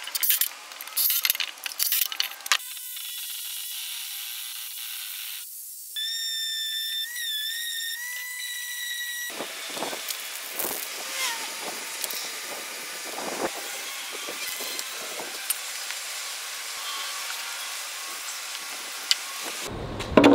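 A cordless drill briefly driving screws into wood, then aerosol spray-paint cans hissing in long sprays. For about three seconds in the middle, a wavering whistle sounds over the hiss.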